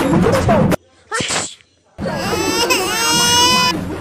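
The soundtrack cuts out abruptly, a short whimper sounds, and then a high-pitched crying wail is held for about a second and a half, dipping in pitch partway, before the busy soundtrack of music and talk comes back just before the end.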